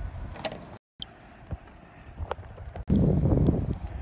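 Wind buffeting a phone's microphone, with faint clicks. The sound cuts out briefly about a second in. A louder low, gusty rumble comes in for the last second.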